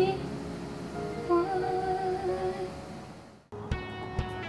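A woman humming a soft melodic line over light accompaniment that fades away as a song ends. About three and a half seconds in the sound cuts off abruptly, and plucked acoustic guitar notes begin a new song.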